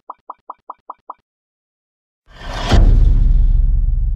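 Intro sound effects: a run of short, evenly spaced electronic blips, about five a second, that stops about a second in. After a short silence comes a swelling whoosh into a loud deep boom, whose low rumble fades slowly.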